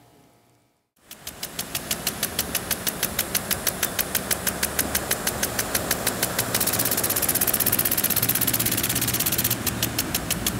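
A rapid, even mechanical ticking, about seven ticks a second, fading in after a second of silence, with a hiss that swells over the last few seconds.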